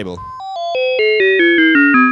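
SSSR Labs Kotelnikov wavetable oscillator synth voice playing a quick descending run of about ten notes, each step lower than the last, with a click at each note change. It gets louder and fuller as it goes down and ends on a held low note.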